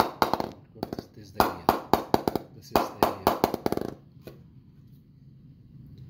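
An English willow cricket bat, a Gray-Nicolls Prestige, is struck again and again on the face of its blade to test its sound and rebound. It gives a run of sharp knocks with a short ring, the last few coming quicker and quicker like a ball bouncing to rest. The knocking stops about four seconds in.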